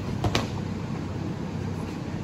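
Steady low hum of a large drum fan, with two brief thuds of the wrestlers moving on the mat just after the start.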